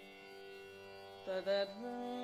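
Tanpura drone sounding steadily and softly, then about one and a half seconds in a female Carnatic vocalist comes in with a short wavering phrase and settles on a held note over the drone.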